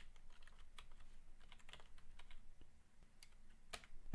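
Faint typing on a computer keyboard: a string of irregular keystroke clicks, with one sharper click just before the end.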